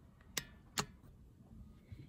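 Two short, sharp clicks less than half a second apart: a hand tapping or handling the phone that is recording.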